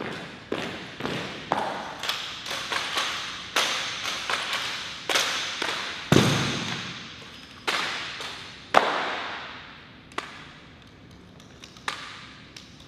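Rifle drill with marching feet in an echoing hall: sharp taps and cracks about twice a second, each with a short echo, as the squad steps and handles its rifles. About six seconds in comes one heavy thud as the rifle butts are grounded together on the floor, followed by a few louder single cracks, with fewer and quieter hits near the end.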